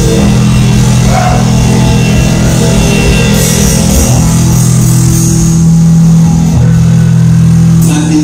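Live rock band playing loud: electric guitars, bass and drum kit, with held low chords that change twice, recorded on a phone.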